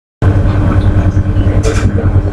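Loud, steady low rumble with a faint hum, cutting in abruptly just after the start, with a brief hiss about one and a half seconds in.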